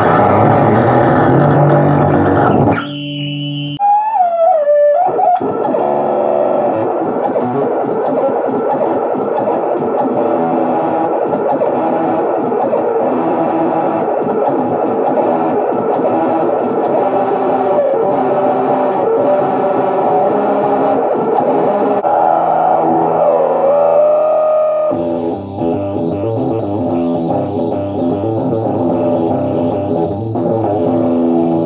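Electric guitar played through the LEFA urANO FUZZ pedal: heavy, noisy fuzz distortion with synth-like oscillator tones. The sound dips briefly about three seconds in, with sliding pitches just after and again near the end, where the texture changes.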